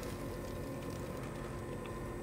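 Steady low mechanical hum with several fixed tones, with a few faint light ticks over it.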